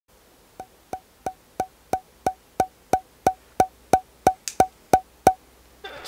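Steady woody ticks, three a second, each with a short ringing pitch. There are fifteen in all, and they stop shortly before the end.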